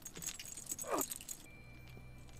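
Faint jingling and clinking from the episode's sound effects: a quick run of light clicks that dies away about halfway through, with a brief falling sound about a second in.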